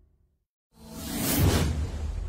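Whoosh sound effect with a deep low boom, swelling in from silence a little under a second in and peaking about halfway through, then easing into background music.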